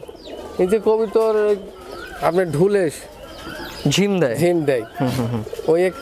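Domestic pigeons cooing: several drawn-out coos, each rising and falling in pitch.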